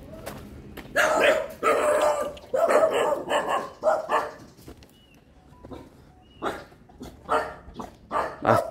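A dog barking repeatedly: a quick run of barks in the first half, then a couple more near the end.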